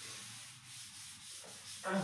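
Wooden-backed duster rubbing across a chalkboard, a scratchy hiss that swells and fades with the strokes as chalk writing is wiped off.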